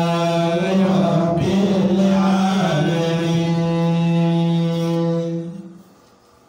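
A man chanting Quranic verses in Arabic in long, drawn-out held notes, the melodic recitation (tilawah) that opens a tafseer, fading out near the end.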